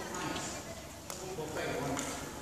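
A badminton racket striking a shuttlecock, one sharp click about a second in, with indistinct voices in the hall around it.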